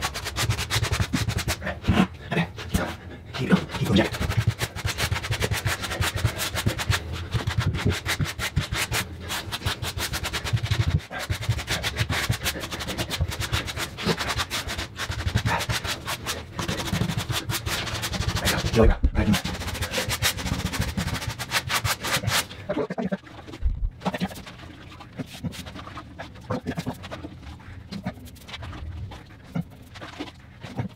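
Rubber grout float scraping and smearing wet grout across a tile floor in quick repeated strokes, working it into the joints; the scraping gets quieter about 23 seconds in.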